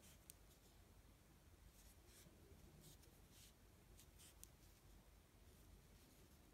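Near silence with a few faint, irregular scratchy rustles of a crochet hook and doubled yarn working slip stitches along a chain.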